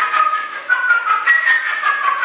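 Solo flute playing a fast, high passage of short notes, each started with a sharp, breathy attack.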